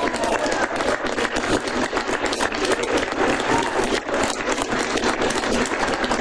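Audience applauding: a dense, steady run of many hands clapping, with some voices among it.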